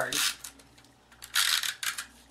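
Stampin' Up! Snail adhesive tape runner rolled across paper, a short ratcheting rasp just after the start and a longer, louder one about a second and a half in.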